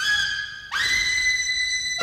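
Unaccompanied jazz trumpet playing high in its range: one note fades out about half a second in, then the player scoops up into a long held high note.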